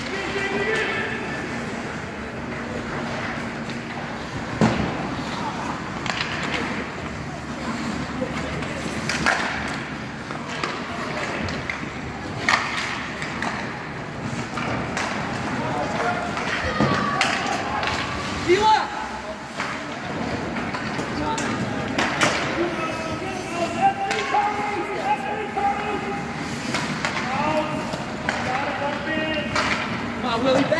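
Ice hockey play in an indoor rink: skates scraping the ice, with sticks and puck knocking sharply now and then and indistinct voices shouting, all echoing in the arena.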